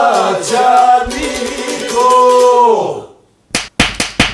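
Several men singing a held-note folk chant together over a plucked long-necked lute. The singing breaks off about three seconds in, and three quick, sharp slaps follow near the end.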